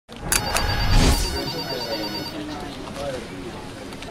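Logo intro sound effect: two sharp clicks and a whoosh over a high, pulsing ring that lasts about two seconds, followed by voices talking.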